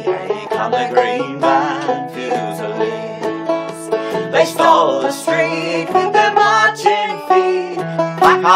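Banjo and acoustic guitar strumming a lively folk tune in a steady beat, with a man and a woman singing along in a duet.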